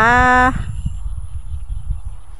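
A woman's drawn-out final 'ค่ะ' for about half a second. Then a steady low rumble of wind buffeting a phone microphone in open country.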